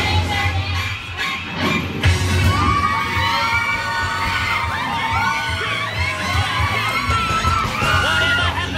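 A crowd of drop-tower ride riders screaming and shouting together over loud music with a steady bass beat. The screams grow thicker about two seconds in.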